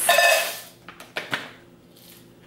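Loose milk oolong tea leaves poured from a foil bag into a metal tea tin, rattling and rustling as they fall. The pour fades within the first second, followed by a few light clicks.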